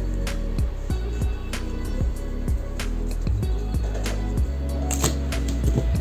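Background instrumental music, with low held notes and light, irregular percussive hits.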